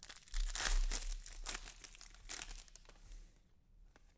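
Foil wrapper of a trading card pack crinkling and tearing as it is ripped open, loudest in the first second and dying away about three seconds in.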